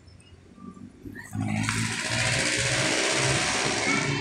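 A motor vehicle passing close by on the street: a loud rush of engine and road noise with a low hum that swells in suddenly about a second in and stays loud.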